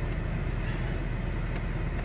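Steady low rumble of a car heard from inside its cabin, typical of the engine idling.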